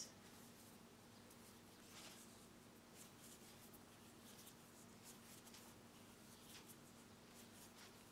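Near silence: faint, soft rustles of cotton thread being handled and worked onto a tatting needle, every second or so, over a low steady hum.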